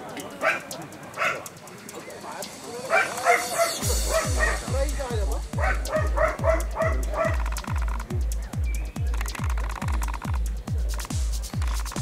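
A dog yipping and whining in short repeated calls. About four seconds in, electronic dance music starts with a steady deep beat, a little over two beats a second.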